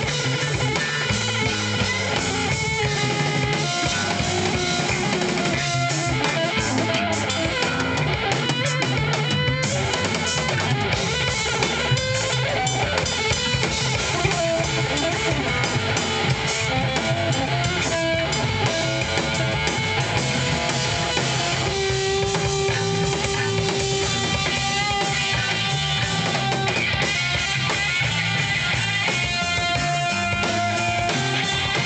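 Live rock band playing an instrumental passage: electric guitar lines over a drum kit and low bass, played loud without vocals.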